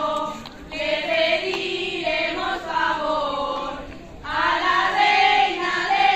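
A group of female voices singing a folk song together, phrase by phrase, with brief breaths between phrases about half a second in and again around four seconds in.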